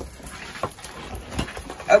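A large diamond-painting canvas being turned over on a table: soft handling and rustling, with two light knocks.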